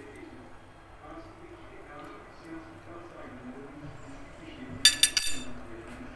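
A fork clinking against a plate, a few quick sharp clinks in about half a second, about five seconds in.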